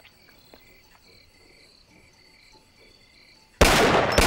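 Cartoon night ambience of crickets chirping steadily in the background, with a few faint clicks. Near the end a sudden loud blast of noise cuts in and dominates.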